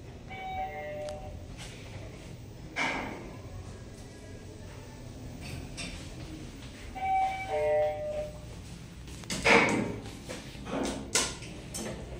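Elevator car interior with a low steady running hum, broken twice by an electronic chime of a few steady notes stepping down in pitch, about half a second in and again about seven seconds in. Several sharp knocks near the end, the loudest about nine and a half seconds in.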